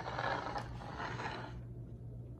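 A pile of old photographs and a picture frame being slid across a hard tabletop: a scraping rustle in two pushes, lasting about a second and a half.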